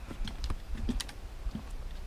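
Footsteps and trekking-pole taps on a wooden boardwalk: an irregular run of light clicks and hollow knocks, several a second, over a low steady rumble.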